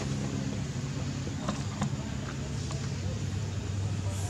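A motor vehicle engine idling, a steady low hum, with a few faint ticks in the middle.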